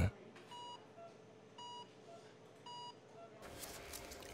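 Hospital patient monitor beeping: three short, clear beeps about a second apart, with fainter, lower-pitched blips in between.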